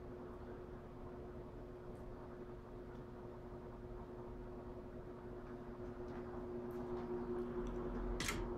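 Mid-1940s Westinghouse Power Aire 16-inch oscillating desk fan (model 16PA2) running on low speed while oscillating: a steady motor hum under a soft rush of air from its Micarta blades. A second, lower hum joins about six seconds in and the sound grows slightly louder toward the end.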